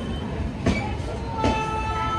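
Passenger train coaches rolling slowly past on the rails, with a low rumble and two sharp clacks of the wheels over rail joints. About one and a half seconds in, a steady high-pitched metallic squeal from the wheels sets in as the train slows to a stop.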